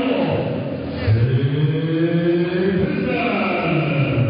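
A ring announcer's voice over the hall's PA system, drawing out a word into one long, chant-like call whose pitch rises slowly, between shorter spoken phrases.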